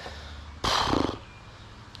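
A man's audible sigh, a breathy exhale of about half a second that starts a little over half a second in and ends with a brief voiced tail, over a low steady background rumble.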